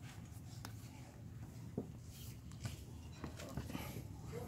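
Faint rubbing of a cloth rag around a motorbike engine's oil filler opening, with scattered light clicks and scrapes from handling, over a low steady background rumble.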